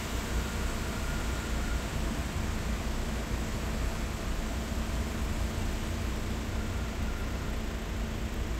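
Steady hiss of heavy rain with wind buffeting the microphone, a constant low rumble underneath.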